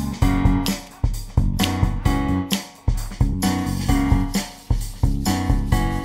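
Instrumental backing music with guitar and bass: chords struck in a steady rhythm, each fading before the next.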